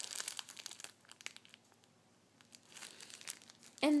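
Clear plastic bag around a squishy toy crinkling as fingers handle it. The crinkles come thick for about the first second, thin out into a lull, then pick up again about two and a half seconds in.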